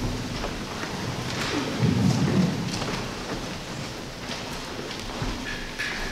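Congregation sitting down in wooden church pews: a shuffling, rustling haze with a low rumble about two seconds in and a few small knocks and creaks.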